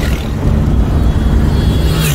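Passenger van driving on a road, heard from inside the cabin: a steady low engine and road rumble with a hiss of road and wind noise over it.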